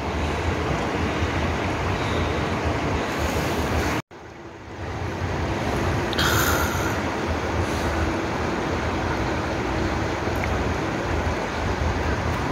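Steady rushing noise with no clear single source. It cuts out abruptly about four seconds in at an edit, then fades back up.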